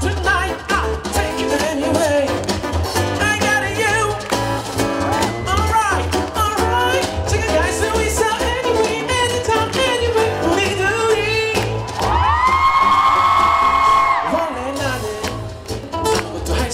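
Live band performance: a male singer sings a melody over electric bass, acoustic guitar and drums. About twelve seconds in he holds one long note, the loudest part, before the phrase ends.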